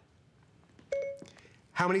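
A short electronic chime from an iPad Air 2 about a second in: the Siri listening tone, signalling that the tablet is ready for a spoken question.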